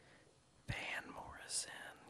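Faint whispered speech, starting after a moment of near silence about two-thirds of a second in and well below normal speaking level.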